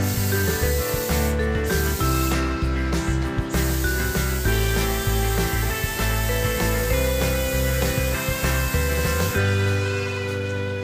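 Compressed-air spray gun hissing as it sprays paint, in bursts with two short breaks and a stop near the end, over background music.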